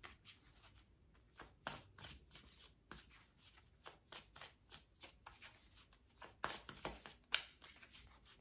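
A deck of oracle cards being shuffled by hand, overhand style: faint, irregular clicks and slides of card stock as small packets drop from one hand into the other, with a few sharper card slaps near the end.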